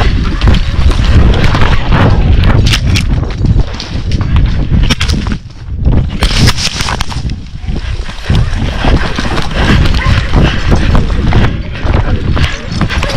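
A horse galloping, its hoofbeats buried under loud wind buffeting and knocking on a camera carried by the rider, in a dense run of irregular thumps.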